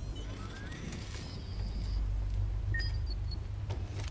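A steady low rumble of ambience, with a short held high electronic tone and then a few brief high beeps from a station ticket machine about three seconds in.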